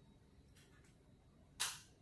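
Near silence: room tone during a pause in speech, broken near the end by one short, sharp intake of breath.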